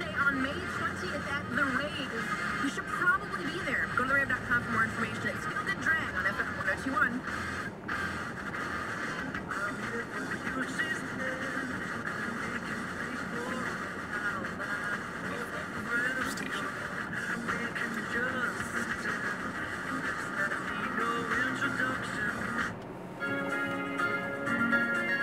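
Car radio playing music with a wavering vocal or melody line, heard in the car's cabin over low road noise. Near the end it breaks off briefly and different music with steady held notes begins.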